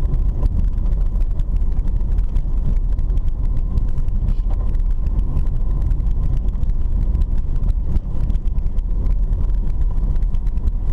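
Car driving on an unpaved dirt road, heard from inside the cabin: a steady low rumble of engine and tyres, with many small clicks and rattles from the rough surface throughout.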